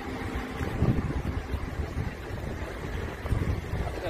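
Wind buffeting the microphone outdoors, an uneven low rumble that swells and drops in gusts.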